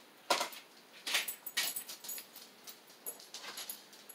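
Craft supplies being handled on a cluttered table: a sharp knock about a third of a second in, then a run of short rustles, scrapes and light clatters as items are moved and picked up.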